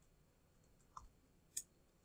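Near silence broken by two faint, short clicks of keys being pressed, about a second in and again near the end, as a calculation is keyed in.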